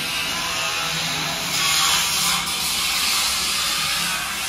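A steady hiss of construction noise with a slight swell in the middle.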